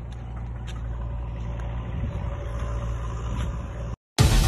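Low, steady rumble of a vehicle engine idling, with a few faint clicks.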